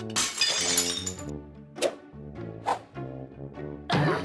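Dropped dinner plates crashing and shattering in the first second, with ringing pieces, over background music. Two sharp single knocks follow later.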